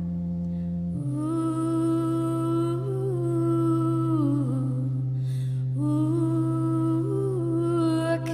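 Live band music: a low held bass note, changing pitch once about a second in, under a wordless held vocal line that slides down at the end of each of its two long phrases.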